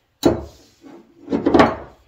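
A silicone spatula scraping and knocking in a skillet as a thick mixture of peanut butter, sugar and corn syrup is stirred. There are two strokes: a short one right at the start and a longer scrape about a second and a half in.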